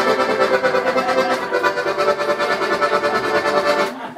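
Piano accordion playing a bellows shake: sustained chords pulsed rapidly by quick in-and-out reversals of the bellows, stopping near the end.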